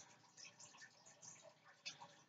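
Near silence, with a few faint soft ticks of a pen moving on sketchbook paper.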